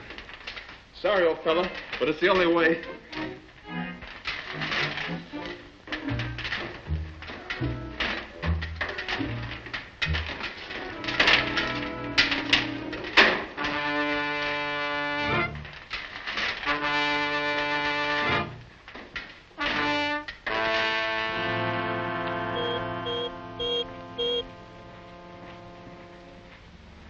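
Orchestral film score with brass. Busy, agitated passages with sharp accents lead into several long held brass chords in the second half.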